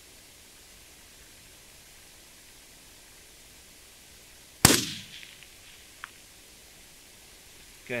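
A single suppressed rifle shot about halfway through: one sharp, loud crack dying away over about half a second, with a faint click over a second later, all over a steady faint hiss.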